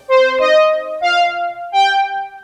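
Roland JU-06A synthesizer in its Juno-106 mode playing a patch: four held notes stepping upward, each doubled an octave higher.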